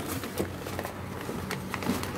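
Packing paper rustling and crinkling as it is pulled open by hand, with a couple of sharper crackles in the second half.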